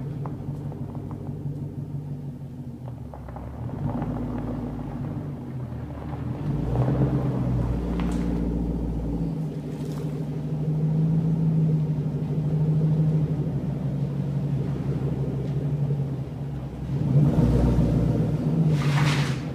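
2007 Ford Mustang's engine running at low revs with a deep exhaust rumble, swelling several times as the car creeps forward and loudest near the end.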